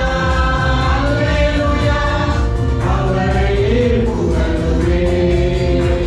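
A small mixed group of men and women singing together into microphones over amplified backing music, holding long notes above a steady bass.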